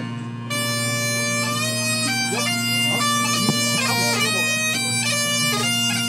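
Bagpipe music: a chanter melody stepping from note to note over a steady, unchanging drone, the tune coming in about half a second in.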